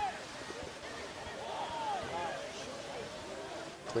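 Distant shouts of rugby players calling to one another across the pitch, several raised voices rising and falling in pitch over a steady open-air background.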